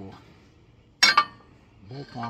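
A welded steel motor-mount bracket set down on a steel sawmill frame: a sharp metal clank, two quick hits about a second in, with a short ring.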